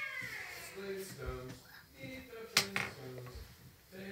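A voice humming a tune in short, steady held notes, with a sharp click about two and a half seconds in.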